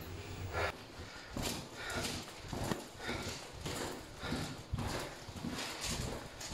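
Footsteps of a person walking on a hard floor, about two steps a second, starting about a second in. A low steady lift hum dies away in the first half-second.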